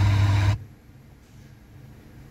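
A 2014 Hyundai i30 factory radio's speakers play about half a second of sound on the FM band, then cut off suddenly, leaving a faint steady hum.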